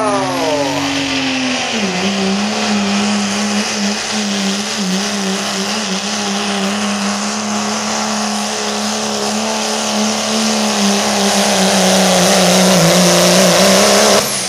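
Modified diesel pickup truck's engine running at high, steady revs under full load as it pulls a weight sled at a truck pull. Its pitch drops about two seconds in, then holds steady, growing louder near the end.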